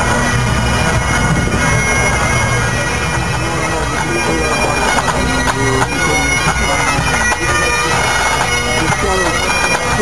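A pipe band playing: massed Great Highland bagpipes sounding a tune on the chanters over their steady, continuous drones.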